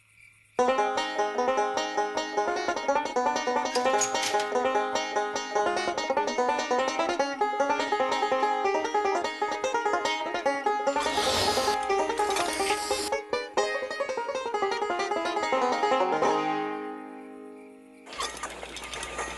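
Banjo played solo with fast bluegrass-style picking, starting about half a second in and fading out near the end. About eleven seconds in, two short bursts of hiss sound over the playing.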